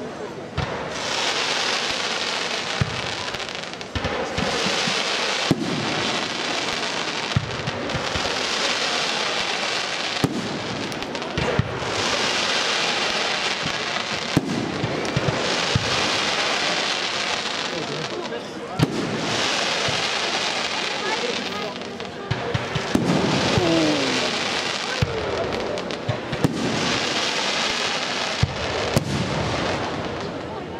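Aerial fireworks display: shells launching and bursting with sharp bangs, each burst followed by a hissing rush lasting a second or two, repeating about every two seconds.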